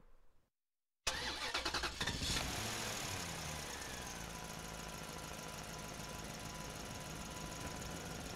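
A car engine starting about a second in, firing unevenly for a moment and then settling into a steady idle.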